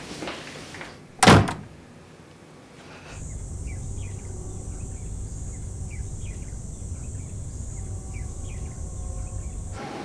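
A door shutting with a single sharp thud about a second in. From about three seconds in comes a steady low outdoor background hum with a faint high hiss and scattered faint short chirps.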